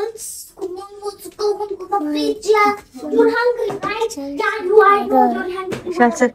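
A young girl singing a short tune in held notes that step up and down, with a brief hiss right at the start.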